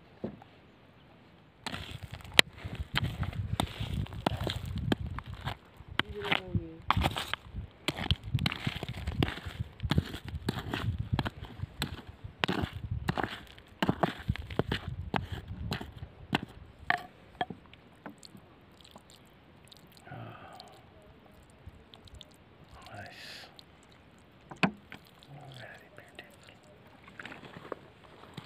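A small hand hammer repeatedly striking and scraping into rocky, gravelly soil, with pebbles and grit rattling. The hits come thick and irregular from about two seconds in, then thin out to occasional knocks after about seventeen seconds.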